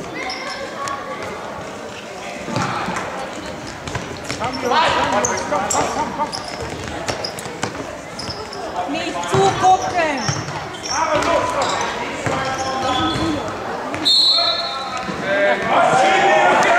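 An indoor football being kicked and bouncing on a sports-hall floor, with children's and spectators' shouts echoing in the hall. A short high referee's whistle sounds near the end.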